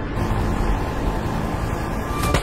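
Steady rumbling vehicle noise, with a faint held musical drone underneath.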